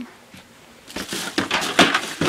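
Rustling and a quick run of light knocks and clicks of things being handled, starting about a second in after a brief lull.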